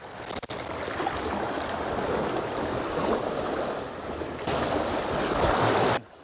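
Small sea waves washing and lapping against shore rocks, a steady rush that turns louder and hissier for the last second and a half.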